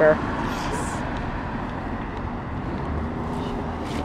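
Steady rush of road traffic: cars passing along a multi-lane street, with no single vehicle standing out.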